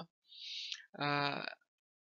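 A man's voice drawing an audible breath, then a short held hesitation sound ('uh') at a steady pitch for about half a second.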